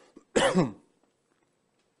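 A man clears his throat once, in a short, loud burst lasting about half a second.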